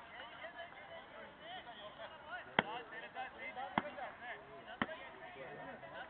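Players' voices calling across the cricket field. Three sharp knocks come about a second apart midway through; the first is the loudest.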